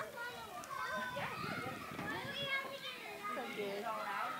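Young children's voices chattering and calling out as they play, with some low rumbling noise in the middle.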